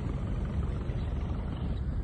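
Steady low rumble of a houseboat under way: its engine running evenly, with water and air noise over it.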